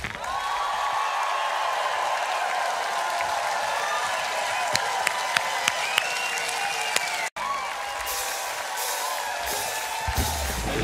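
Electric guitar solo with the bass and drums dropped out: one long sustained high note with slight bends, over audience clapping and cheering. The sound cuts out for an instant a little past seven seconds in, and the full rock band comes back in at the very end.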